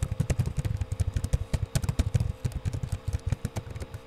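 Computer keyboard typing: a rapid, irregular run of keystroke clicks, several a second, over a steady electrical hum.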